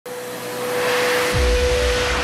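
F/A-18 fighter jet engines running at full power during a carrier catapult launch, with afterburners lit. It is a loud rushing noise that builds over the first second, with a steady tone running through it, and a deep rumble comes in about a second and a half in.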